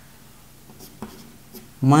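Chalk writing on a blackboard: a few light taps and scratches as figures are written.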